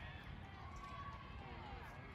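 Faint, distant voices over a low, steady outdoor rumble.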